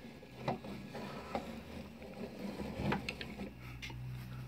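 Wooden mechanism of a hand-turned driftwood automaton working, giving a few faint, irregular clicks and knocks over a low hum.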